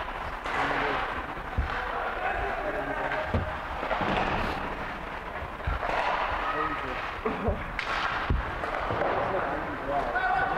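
Ice hockey rink during play: indistinct voices from the stands and bench over a steady hall din, broken by about six sharp, low thuds.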